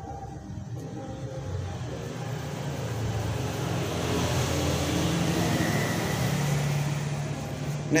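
A motor vehicle passing: a low engine hum that grows gradually louder over several seconds and eases off near the end.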